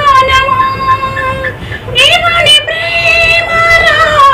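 A woman singing a Telugu song solo in a high voice, holding long sustained notes with a short break for breath a little before two seconds in.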